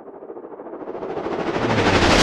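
A rising noise swell, an edited transition effect, growing steadily louder and brighter with a fast, stuttering texture.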